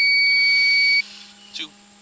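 A steady high-pitched electronic beep from the sewer inspection equipment that cuts off suddenly about a second in, over a faint steady electrical hum.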